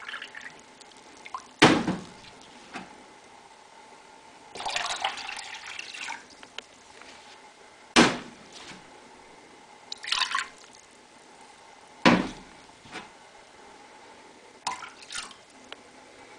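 Liquid poured and sloshed in a glass measuring cup being rinsed out with diluted bleach solution, in several short splashes. Three sharp knocks, the loudest sounds, come about two, eight and twelve seconds in, typical of the glass cup being set down on the countertop.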